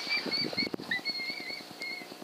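Electronic predator call playing a high, warbling distress call in short broken notes that waver in pitch, stopping near the end.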